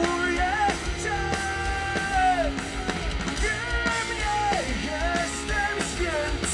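Rock band playing live: a male singer sings long held notes that slide between pitches, over electric guitar, keyboard and a steady drum beat.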